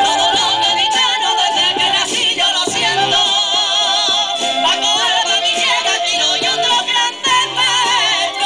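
Live band music: men singing with vibrato over a clarinet and a strummed Spanish guitar.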